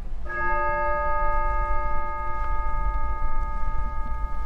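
A bell struck once about a third of a second in, its several tones ringing on steadily with little fading, over a steady low rumble.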